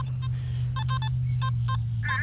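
Nokta Makro Simplex metal detector giving several short, high-pitched beeps as the coil sweeps over a target, with a steady low hum underneath. The target reads jumpy, bouncing between the 20s and a high tone in the 60s, which is typical of trash such as a pull tab or bottle cap.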